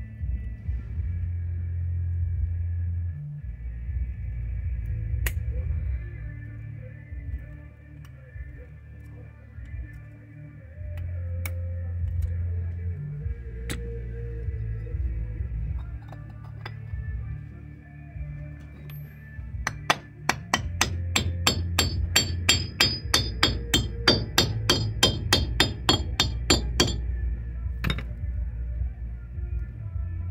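Background music throughout, and about twenty seconds in a fast run of sharp metallic taps, about five a second for some seven seconds: a hammer tapping the metal cap onto the front wheel hub of a Toyota T100 to seat it.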